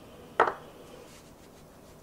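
A single sharp knock of kitchenware against a stainless steel container, just under half a second in, fading quickly.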